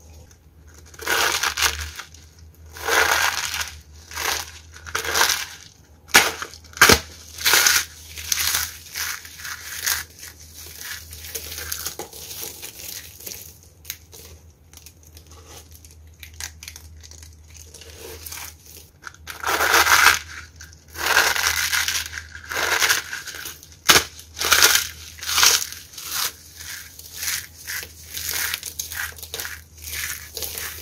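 Hands crushing and crumbling handfuls of dry soap shavings, curls and flakes, giving repeated crackling crunches. The crunching is loudest in clusters near the start and again about two-thirds of the way through, with a softer, quieter stretch in between.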